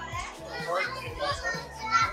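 Children's voices and chatter over background music.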